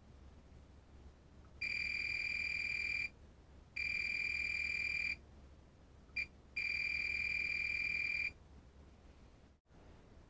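Fluke 189 multimeter's continuity beeper giving a steady high beep three times, each about a second and a half long, with a brief blip between the second and third. The beeps sound as the probes bridge the pins of a shorted MOSFET.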